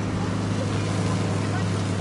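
Steady low drone of a fire engine's pump motor running, under the continuous hiss of a fire hose jet spraying water.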